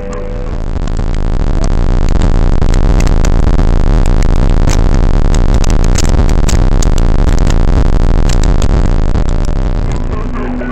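Harshly distorted, very loud noise crackling with sharp clicks: logo-jingle audio mangled by heavy audio effects. It swells up over the first couple of seconds, holds, and eases off near the end.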